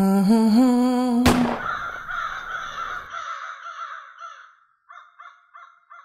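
A person humming a slow tune, cut off about a second in by a sharp click. Then crows cawing: a long harsh call that fades over about three seconds, followed by a run of short caws, about three a second.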